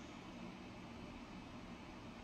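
Faint steady whirring hiss of a laptop cooling fan running on an HP ProBook 4540s that powers on but shows nothing on screen because its BIOS was corrupted by an interrupted update.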